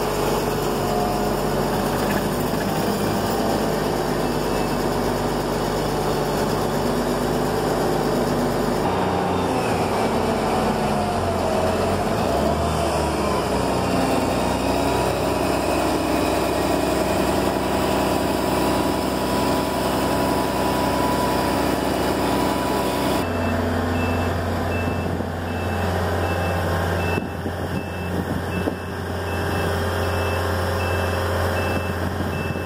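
Heavy construction machinery engine running steadily, its pitch changing at a couple of points. In the last several seconds a backup alarm beeps over it at an even pace.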